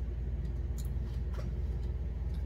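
Steady low hum of room tone, with a couple of faint short clicks about a second in and again about half a second later.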